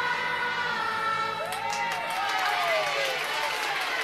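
A choir's last held chord ends in the first half-second. A crowd of voices then breaks into cheering and calling out, several voices overlapping, with a scattering of claps.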